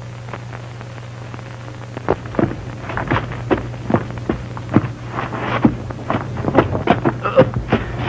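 Film fight sound effects: a quick, irregular run of punches and short grunts starting about two seconds in, over a steady low hum on the old soundtrack.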